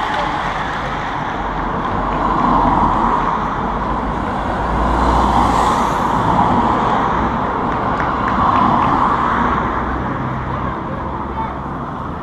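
A car driving past close by, its engine and tyre noise swelling to a peak about five to six seconds in, over steady street noise.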